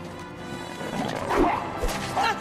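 Dramatic orchestral film score with fighters' yells over it as a sword fight breaks out. The loudest yell comes about a second and a half in.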